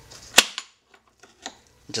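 A single sharp plastic snap as a spring clip on the Lexus IS F's air filter box is pried open, followed by two faint clicks.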